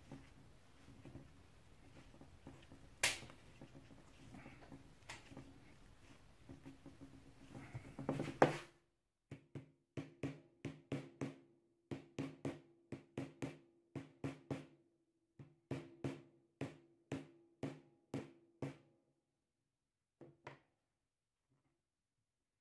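Rubber mallet tapping the strip of sealing caps into the filling holes of a Bosch M6 AGM scooter battery: about twenty short taps, roughly two a second, each with a low ring from the battery's plastic case. Before them come a few light clicks from the caps being pressed by hand, and one louder knock.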